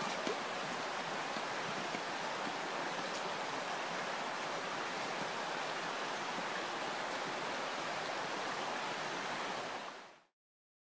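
Steady rush of flowing river water, fading out near the end.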